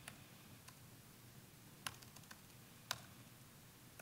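Near silence with a low steady room hum and a few isolated sharp clicks of a computer keyboard, the two loudest about two and three seconds in.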